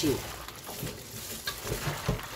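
Gloved hands mixing cut young radish greens in a watery chili seasoning in a stainless steel bowl: soft, irregular wet rustling and squishing of the leaves in the liquid.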